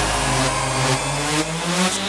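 Progressive house track in a breakdown: the drums drop out and a pitched, many-toned synth sound glides steadily upward in pitch, a build-up riser.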